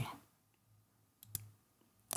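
Computer mouse clicking twice in quick succession, sharp short clicks about a second and a quarter in, against near silence.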